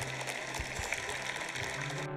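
Studio audience applauding, a dense patter of claps, while a low sustained music note sets in underneath at the start of the outro music.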